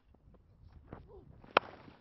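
A cricket bat striking the ball once with a sharp crack about three-quarters of the way in, a full delivery hit straight, over faint ground noise.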